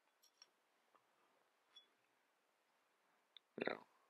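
Near silence with a few faint small clicks from hands working the fly at the tying vise, then a short voice sound near the end.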